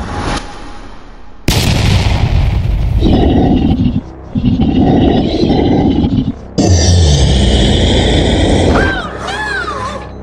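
Cartoon sound effects over music: a whoosh, then a sudden loud boom about a second and a half in. The boom is followed by long stretches of a monster's growling roar from the green Venom creature, with short breaks twice. Near the end comes a warbling tone that swoops down and up.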